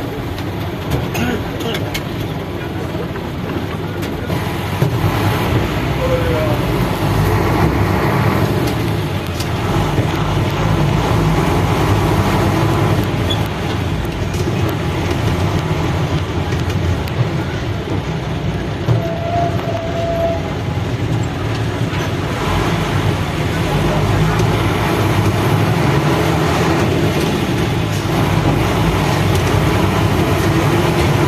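Steady engine and road noise heard from inside a minibus (matatu) as it moves slowly through city traffic, with voices in the background. Two short faint tones, one about six seconds in and one around nineteen seconds.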